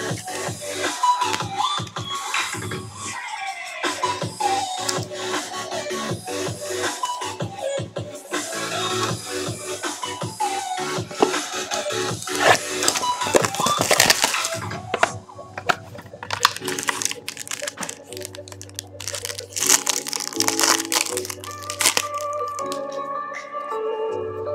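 Background music with repeated crackling and crinkling of plastic wrap being torn off a sealed box of baseball cards, along with clicks from handling the cards. The crackle is densest about halfway through and again a few seconds later.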